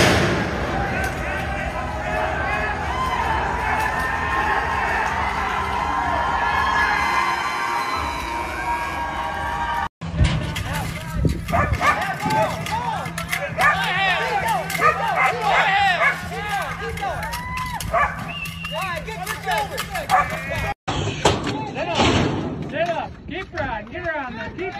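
Rodeo onlookers shouting and yelling while a bull is ridden: a dense mix of voices for the first ten seconds, then separate shouts and whoops over a steady low hum, with the sound changing abruptly twice.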